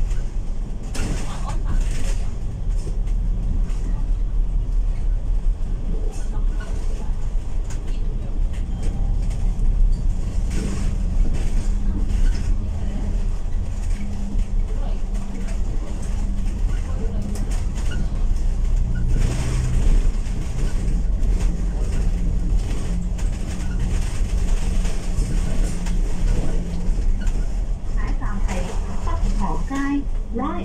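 Cabin sound of an Alexander Dennis Enviro500 MMC double-decker bus on the move: a steady low engine and road rumble, with a humming drone that shifts in pitch as the bus changes speed, and occasional brief knocks and rattles from the body.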